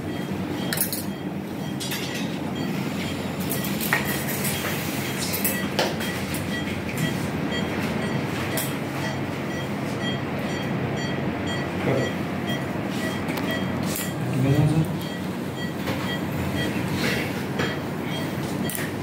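Metal surgical instruments clinking against one another in an operating theatre, over a steady hum of theatre equipment, with a faint high electronic beep repeating at a regular pace.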